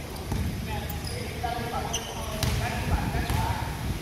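A basketball bouncing on an indoor court floor, with players' voices calling out over it.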